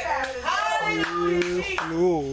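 A preacher's voice through a microphone in a chanted, sing-song delivery, holding one note for most of a second, with hand clapping.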